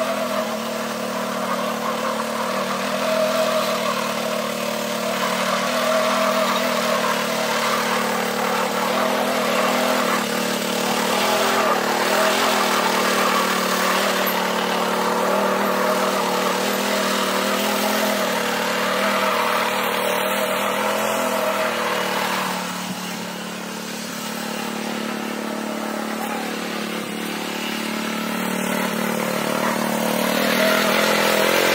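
Small petrol engine of a single-wheel mini power weeder running steadily under load as the weeder tills the soil. The engine note eases a little about two-thirds of the way through and builds again near the end.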